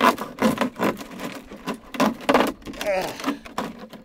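A thin plastic five-gallon water jug being cut open with a pocket knife: a run of short, sharp crackling strokes, about two or three a second.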